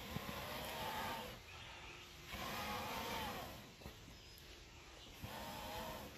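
Three long, breathy exhalations by a person, each lasting about a second and a half, with short pauses between them.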